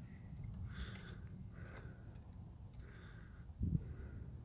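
Quiet handling sounds: a low rumble with a few soft breaths about a second apart, and a dull knock shortly before the end.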